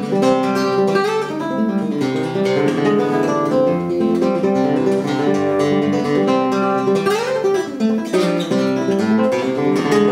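Stansell handmade nylon-string guitar fingerpicked in a fast flowing run of notes, with one note sliding up in pitch about seven seconds in.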